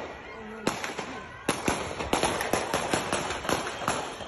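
Police pistol gunfire recorded on a phone: a single shot about a second in, then a rapid string of shots at about four or five a second, each echoing briefly.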